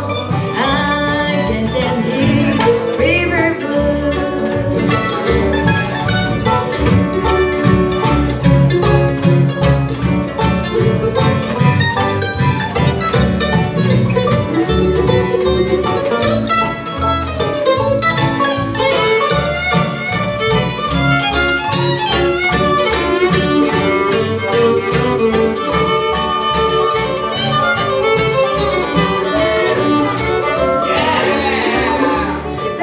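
Bluegrass band playing an instrumental passage: fiddle, mandolin, acoustic guitar, five-string banjo and upright bass together at a steady beat, amplified through a PA.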